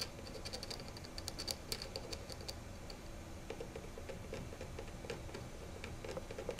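A hand-held needle worked directly on a gramophone record, giving a run of small regular clicks at about five a second. They are high and sharp for the first couple of seconds, then lower and duller in the second half.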